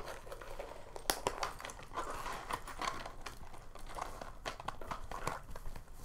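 A leather clutch and its metal chain strap being handled: rustling with scattered small clicks of metal hardware as the strap ends are fastened to the bag.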